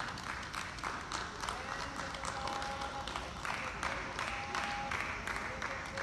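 A small crowd of spectators clapping at the end of a tennis match, with people talking over the applause.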